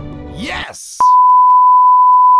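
Television test tone, the steady beep that goes with colour bars, starting about halfway in and the loudest thing heard. Just before it, background music ends with a short rising swoosh.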